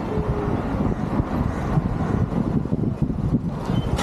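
Street traffic at a roadside: motor vehicles running past, among them a light delivery truck that is passing close by near the end, a steady low rumble.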